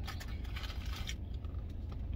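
Steady low hum of a vehicle cab with the air conditioning running, with faint scattered rustles and clicks from handling food.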